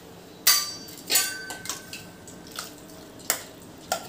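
A metal spoon clanking against a metal pressure cooker while the potato curry is stirred, five sharp clinks, the second one ringing on briefly.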